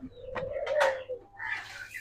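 Ringneck doves cooing: one low, drawn-out coo lasting about a second, with a few sharp clicks over it and fainter, higher calls near the end.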